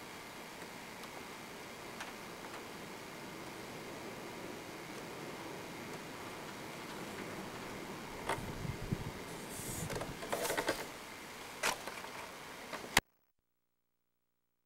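Steady hiss of an old camcorder recording, with a few light knocks and rustles in the second half from the camera being handled as the operator moves over the joists. A sharp click near the end, then the sound cuts to dead silence as the recording stops.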